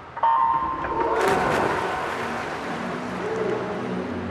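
Electronic race-start beep, a steady tone lasting under a second, followed about a second in by a burst of splashing as the swimmers dive in, which settles into the steady noise of the pool hall.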